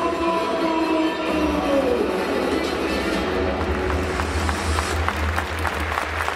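Music played over a ballpark's sound system, with the crowd starting to clap near the end.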